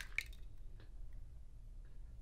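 A raw egg being pried open by hand over a goblet of milk: one short shell click just after the start, then faint soft handling sounds.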